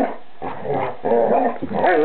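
Dog whining and whimpering in wavering cries, twice in a short space, typical of a submissive dog among playing dogs.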